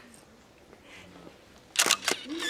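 Quiet studio room tone, then a camera shutter fires with a sharp click near the end.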